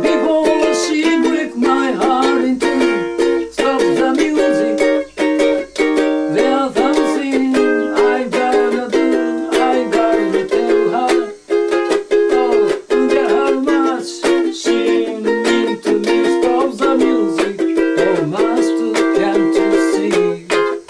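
Ukulele strummed in a steady, even rhythm through an instrumental passage with no singing.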